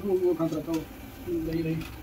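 Speech: a person talking, with no other clear sound.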